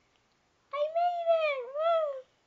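A high-pitched vocal call in two swells, rising, dipping and rising again before falling away, starting under a second in and lasting about a second and a half.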